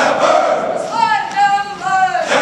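A group of voices singing together in unison, with loud held notes that rise and fall in pitch.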